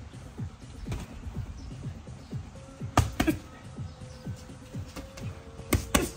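Background music with a steady beat. Boxing gloves smack together in quick pairs, about three seconds in and again near the end, as jabs are thrown and parried.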